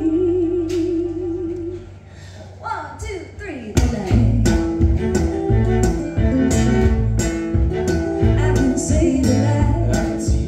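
Live acoustic band music: a woman's voice holding a long wavering note over acoustic guitar, fiddle and bass guitar. After a short lull about two seconds in, falling sliding notes lead into the full band with steady strummed guitar and bass from about four seconds in.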